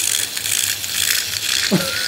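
Small motorized cat toy rattling steadily as it runs across a hard floor.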